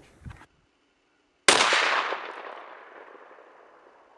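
A single shot from a Mossberg 930 12-gauge semi-automatic shotgun firing a 3-inch turkey load, about a second and a half in; the report starts abruptly and its echo dies away over the next two seconds.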